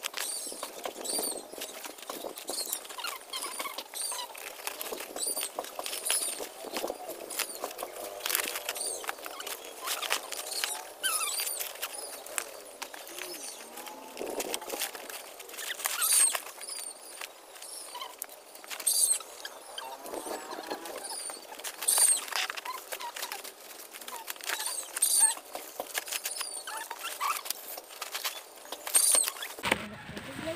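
Dry sticks and twigs being stuffed into woven plastic sacks: constant rustling and scraping with frequent sharp snaps and cracks, and short high-pitched chirps scattered throughout.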